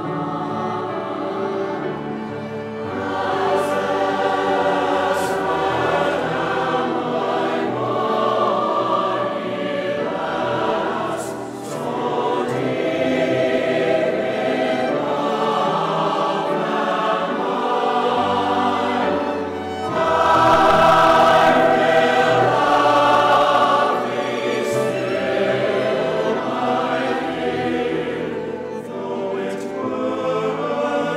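A large mixed choir singing held chords, swelling to its loudest passage about two-thirds of the way through.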